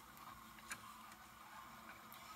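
Near silence: faint room tone with a couple of soft clicks.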